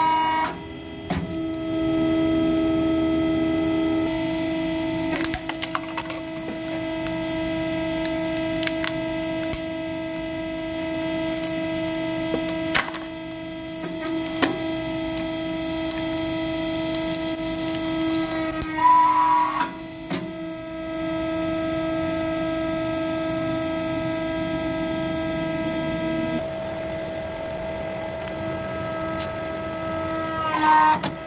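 Hydraulic press running with a steady pump hum while the ram crushes objects, with scattered sharp cracks and creaks from the objects giving way. A short louder burst comes about two-thirds of the way through.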